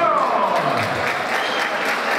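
Audience applauding, many hands clapping together in a dense, steady patter, with voices mixed in.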